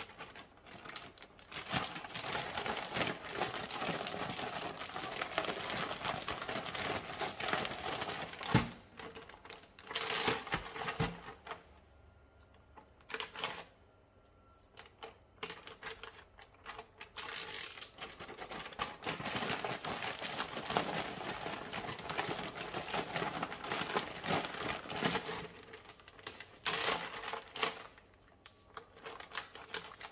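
Plastic zip-top bag crinkling and rustling as it is handled and shaken to coat meat in flour. The rustling comes in long stretches with short pauses, and there is one sharp knock about eight seconds in.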